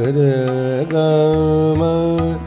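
A man singing an alaap in Raag Ahir Bhairav on sargam syllables (sa, re, ga), holding long notes joined by short slides between them. A steady drum beat runs behind the voice.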